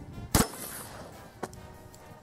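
A single shotgun blast from a cylinder-bore break-action shotgun firing a slug, sharp and loud with a short ring after it, then a much fainter sharp knock about a second later.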